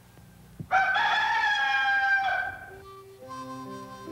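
A rooster crows once, one long call of about two seconds starting just under a second in. Music with held notes comes in near the end.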